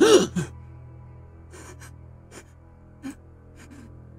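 A voice gives a sharp gasping cry, then takes several short sobbing breaths, all over a low steady music drone.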